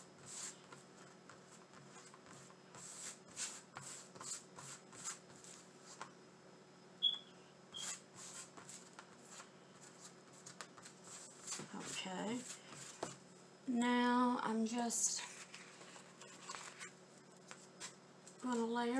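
Hands rubbing and pressing a plastic window-cling decal flat onto a stretched canvas, a run of short brushing, scraping strokes as the bubbles and creases are pressed out. A brief voice sounds near the end.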